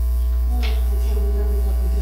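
Loud, steady electrical mains hum on the sound system, with a faint voice under it from about half a second in.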